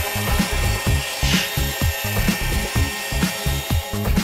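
An electric drill with a paddle mixer churning thick tile adhesive in a plastic bucket, a steady motor sound with scraping, heard together with background electronic music that keeps a steady beat of about two beats a second.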